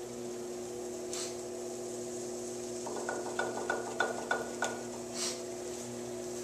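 Electric potter's wheel running with a steady hum while wet clay is worked on it by hand. About halfway through there is a short run of regular ticks, about three a second, lasting a second and a half.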